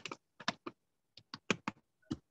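Keystrokes on a computer keyboard: about ten short, uneven taps.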